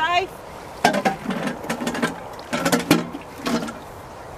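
Indistinct voices talking in short bursts, with a few sharp clicks among them.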